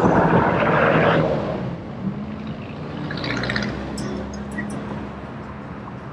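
Road traffic heard from a vehicle driving along a city avenue: a loud rush of noise for about the first second, then a steady engine hum with a few faint ticks.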